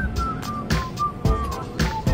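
Background music: a single high melody line over a steady beat.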